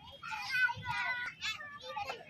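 Small children's high-pitched voices calling and chattering at play.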